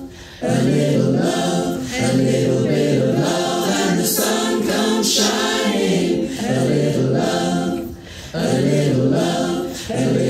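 Mixed community choir singing a cappella, many men's and women's voices recorded separately at home and mixed together, in long held phrases with short breath breaks about half a second in and again near eight seconds.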